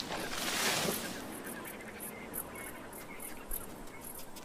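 Outdoor nature ambience: a rustle of leafy foliage in the first second, then faint, very high chirps repeating a few times a second.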